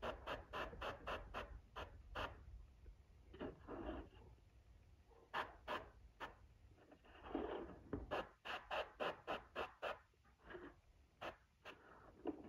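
Airbrush spraying paint in short, faint bursts of hiss, with the paint flow turned low, amid runs of rapid light clicks.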